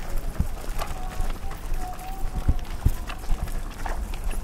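Footsteps on a hard path, an irregular series of low thuds, with people's voices faint in the background.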